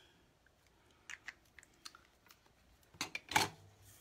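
Small clicks and taps from handling a bottle of liquid glue and paper on a craft desk, with a louder cluster of knocks about three seconds in.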